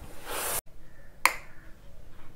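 A short hiss of steam from a hose-fed steam iron, cut off abruptly, followed about a second later by a single sharp click.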